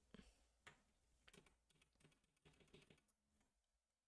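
Near silence, with a few faint clicks of computer keys.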